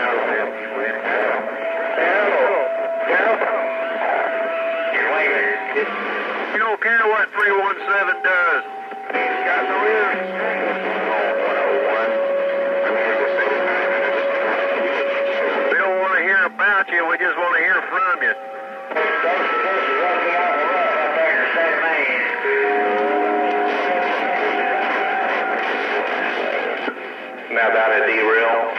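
Stryker SR-955HP radio's receiver audio from a busy channel: overlapping, unintelligible voices under steady whistling tones that change pitch every few seconds, the sound thin and narrow as through a radio speaker.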